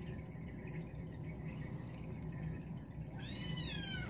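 A blue British Shorthair kitten gives one short, high-pitched mew near the end, falling in pitch as it closes.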